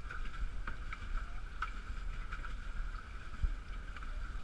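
Wind rumbling on the microphone out on open water, with a steady thin whine underneath and a few small knocks.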